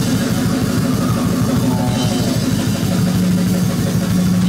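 Heavy metal band playing live: rapid drumming under distorted electric guitars and bass, with a low note held steady from near the end.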